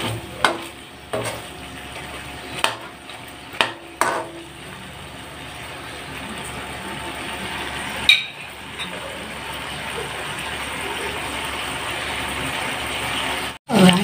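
Small sausages sizzling in an aluminium wok, frying in their own rendered fat with no oil added as they start to caramelize. A metal spatula knocks and scrapes against the pan several times in the first four seconds and once more about eight seconds in. The sizzle grows steadily louder through the second half, then cuts off suddenly near the end.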